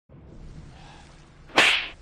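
A sudden loud swish about one and a half seconds in, fading out over half a second, over faint background noise.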